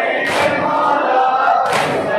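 A crowd of men chanting a noha in unison with the amplified reciters. Two sharp, loud strikes about a second and a half apart fall on the beat: the mourners beating their chests (matam).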